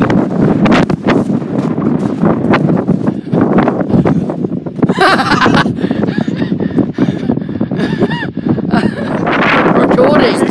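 Wind buffeting a phone's microphone on an exposed hilltop: a loud, ragged rumble that carries on throughout.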